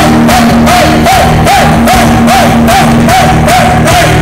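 Rock band playing live, loud: drum kit keeping a steady fast beat under electric bass and electric guitar, with a short rising-and-falling melodic figure repeated over and over.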